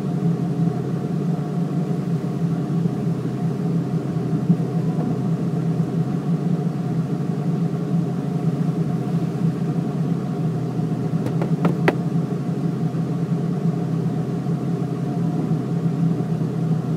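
A car's engine idling steadily, heard from inside the parked car's cabin, with a few faint clicks about twelve seconds in.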